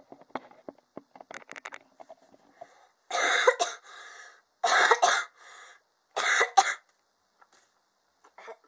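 A coughing fit from someone who is ill: three loud coughs about a second and a half apart, each trailed by a fainter sound.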